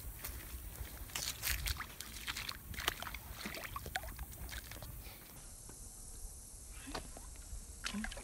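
Faint splashing and sloshing of shallow water as a small largemouth bass is lowered in by hand and held there for release. There is a quick run of small splashes in the first few seconds, then quieter water movement.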